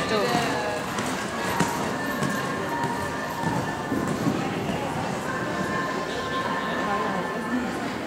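Hall ambience of an indoor riding arena: music playing over the speakers with people talking, and horses' hoofbeats on the arena footing.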